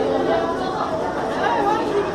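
Indistinct chatter of several voices in the background, steady throughout, with no words standing out.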